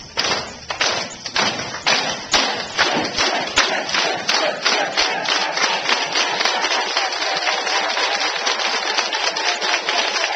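A group clapping hands: separate sharp claps and smacks at first, thickening into steady applause, with a crowd's voices rising near the end.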